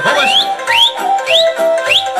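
Instrumental Romanian folk music with a steady beat and held notes, played between sung verses. Over it come four short rising whistles, evenly spaced about half a second apart.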